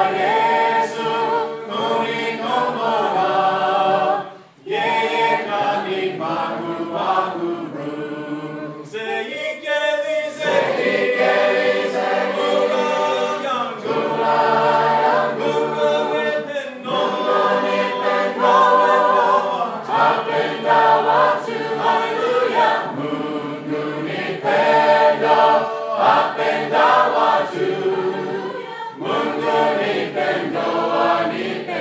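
A group of voices singing a Swahili hymn in harmony, in phrases separated by brief pauses.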